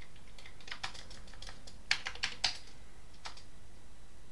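Keystrokes on a Commodore 128 keyboard: about eight unevenly spaced key presses, the loudest a quick run of four around two seconds in.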